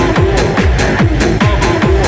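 Hard trance music, mixed continuously: a fast, steady four-on-the-floor kick drum that drops in pitch on every beat, with regular hi-hats and a held synth riff over it.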